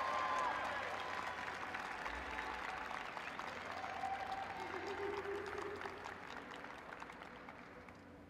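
Arena audience applauding a pair of skaters as they are introduced, with a couple of cheers; the applause dies away steadily toward the end.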